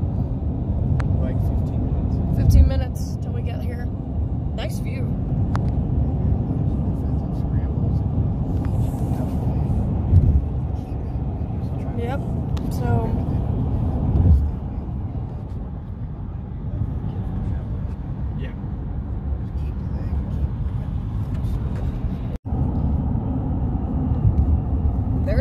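Steady road and engine noise inside a moving car's cabin at highway speed, with a few louder thumps.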